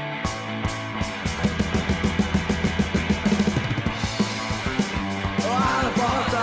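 Punk rock song in an instrumental passage: a band with drum kit and guitars playing steadily, with a fast run of repeated notes in the middle.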